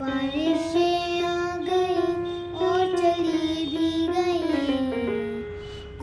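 A child singing long held notes without words, with a gentle stepwise fall in pitch near the end, accompanied by a portable electronic keyboard.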